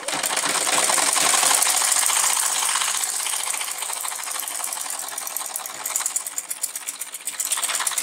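Old black manually driven sewing machine stitching a seam in bag fabric: a rapid, steady mechanical clatter of needle and mechanism running at a constant pace, dipping slightly in loudness in the middle.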